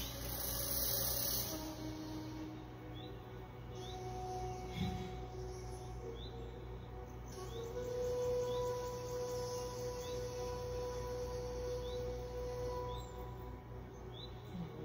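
Soft ambient background music of long held tones that shift every few seconds, with faint short chirps repeating about once a second.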